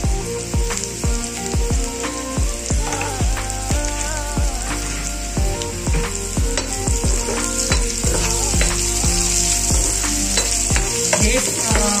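Bitter gourd strips frying in hot oil in a pan, sizzling steadily while a spoon and spatula stir them.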